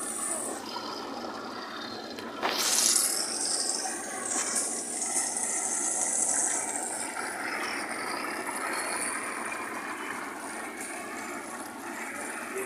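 Water bubbling and churning in an aerated fish tank, a steady hissing wash of noise, with a louder sudden burst about two and a half seconds in.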